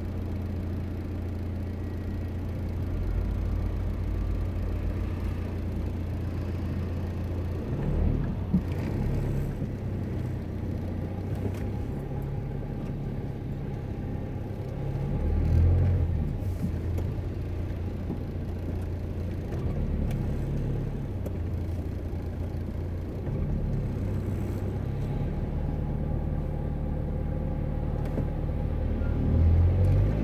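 Car engine heard from inside the cabin, idling and moving off at low speed in slow stop-and-go city traffic: a steady low hum whose pitch steps up and down, with a few louder bumps.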